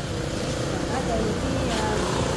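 Voices of several people talking at a meal table, over a steady low rumble.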